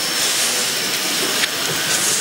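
Steady hiss of background noise, with a thin high whine that fades out about halfway through.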